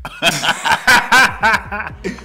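Two men laughing together in a string of short, repeated laughs.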